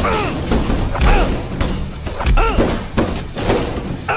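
A fistfight: repeated heavy thuds of blows and bodies hitting, about one a second, each with a short pained grunt or cry.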